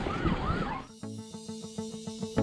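Emergency vehicle siren in a fast yelp, its pitch sweeping up and down about three times a second over street noise. About a second in it gives way to background music with plucked notes.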